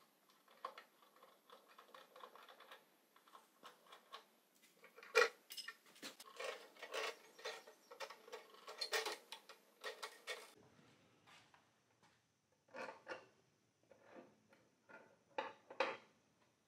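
Scattered light metallic clicks and clinks of hand work on a Grizzly G0948 bandsaw: the threaded blade-tension rod, its knob broken off, is cranked down by hand and the blade is worked off the wheel, with the clicks densest in the middle. Then sparser clicks and knocks as the upper wheel is handled and pulled off.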